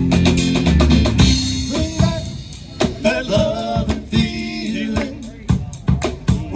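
Live rock-and-roll band playing: drum kit with snare and bass drum under electric guitars. Sustained chords for the first couple of seconds, then sharper, more separated drum hits carry the rest.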